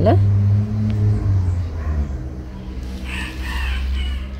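A steady low motor drone, like an engine running nearby, dropping slightly in pitch about halfway through.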